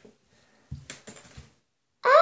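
A few faint, light clicks and taps, starting a little under a second in and lasting about half a second.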